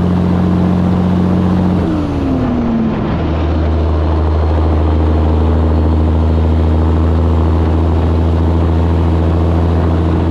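Caterpillar diesel engine of a 1984 Peterbilt 362 cabover running at highway speed. About two seconds in its note drops in pitch, then settles and runs steady at the lower note.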